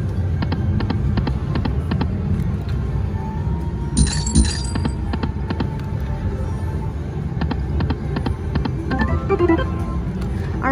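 Piggy Bankin slot machine's spin music and sound effects over several reel spins, with runs of quick clicks and a bright chime about four seconds in, over loud casino background noise.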